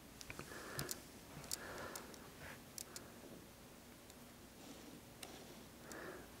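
Faint, irregular clicks and soft rustles of a handheld camera and its lens being handled, as fingers work the lens and controls.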